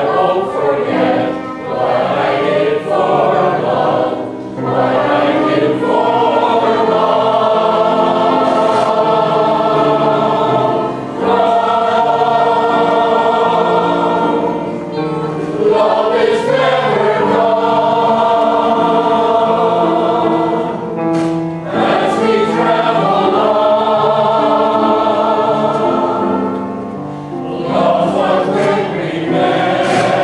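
Mixed chorus singing a Broadway song, long held chords in phrases of several seconds with brief breaks between them.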